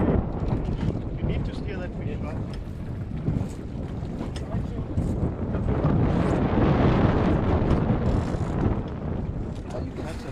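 Wind buffeting the microphone on an open boat at sea, over a steady rush of water, swelling louder about six seconds in.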